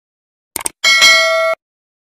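Subscribe-button animation sound effect: two quick mouse clicks, then a bright bell ding that cuts off suddenly after under a second.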